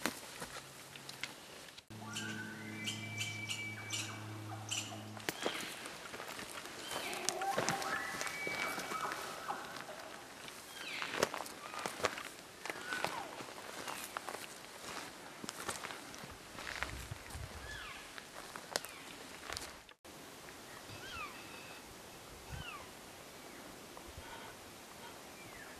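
Elk cow mews: short calls that fall in pitch, several in the last few seconds, over footsteps through brush and sharp snaps of twigs. Early on a steady low tone is held for about three seconds.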